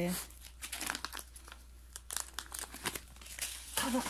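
A dog-treat bag crinkling and rustling in irregular crackles as it is handled.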